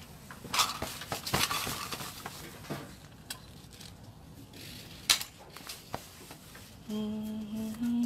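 Scattered light clicks and knocks of small objects handled on a table, then a person humming a few held notes that start about a second before the end.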